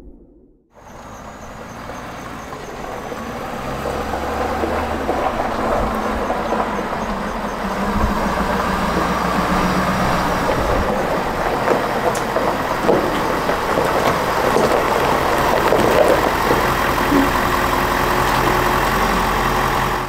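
Ford F-350 Super Duty pickup's engine running, with a low steady rumble that builds over the first several seconds and then holds.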